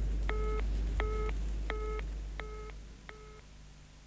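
Telephone busy signal: one short, steady beep repeated at an even rate of about one every 0.7 s, five times, fading away near the end. It is the sign of an engaged line.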